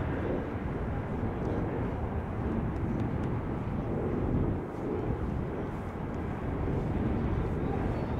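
Steady low rumble of wind buffeting the microphone, rising and falling unevenly, with a brief lull about halfway through.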